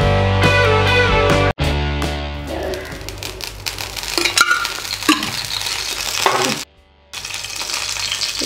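Background music for the first couple of seconds, then groundnut oil in a hot pan starting to sizzle with light crackles, the sound cutting out briefly about three-quarters of the way through.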